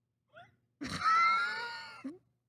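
A man's high-pitched, wheezy laugh, about a second long, with a wavering pitch. It starts partway in, after a faint short rising squeak.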